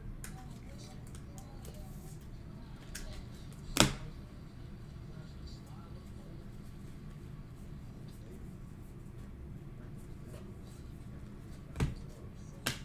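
Trading cards being handled and shuffled by hand over a low steady background hum, with a sharp click about four seconds in and another near the end.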